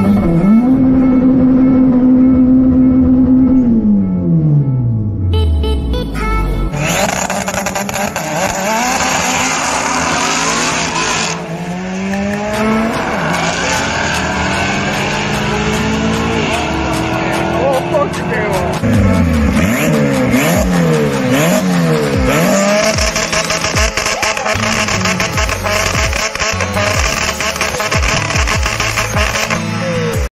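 Race car engines mixed with background music: a strong steady note for the first few seconds falls steeply away in pitch, then engines rev up and down repeatedly under a busy music bed.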